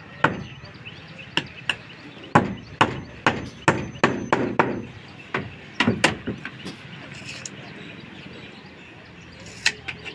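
Hammer blows on the wooden shuttering boards of staircase formwork: about a dozen sharp knocks in irregular quick succession over the first six seconds, then a pause and one more blow near the end.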